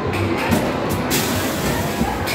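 Amusement arcade din: electronic music and sound effects from the game machines over a general noisy background. A louder hiss comes in about a second in.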